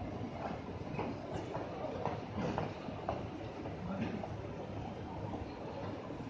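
Busy city street ambience beside a railway station: a steady low rumble of traffic and trains, scattered with many short irregular clicks and knocks from a large crowd moving on foot.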